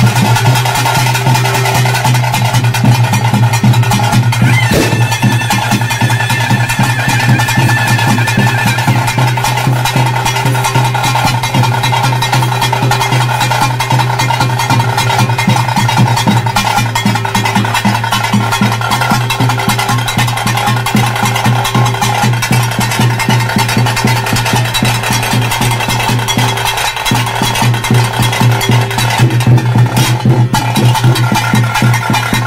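Drum-led ritual music for a kola dance: fast, dense drumming over a steady droning tone.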